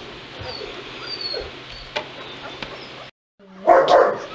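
Two-week-old White Shepherd puppies squeaking and whimpering faintly, then a brief moment of silence about three seconds in followed by a loud puppy whimper near the end.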